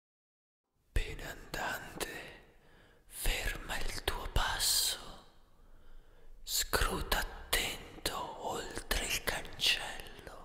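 A whispered voice intoning in breathy, hissing phrases with short pauses, starting about a second in after silence, with no instruments yet: the whispered vocal intro of a black metal track.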